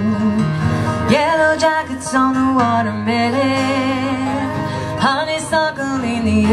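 Live country song: a woman singing held notes with vibrato over two strummed acoustic guitars.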